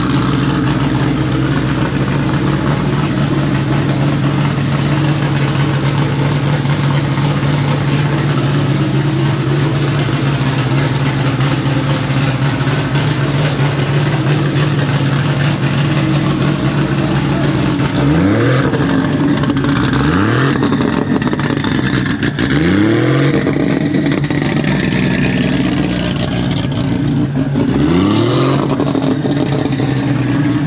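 Turbocharged Nissan Skyline R32's straight-six idling steadily, then blipped four times in the second half, each rev rising quickly and dropping back to idle.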